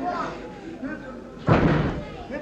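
A single heavy thud in the wrestling ring about one and a half seconds in, with a short boom after it, over the crowd's chatter.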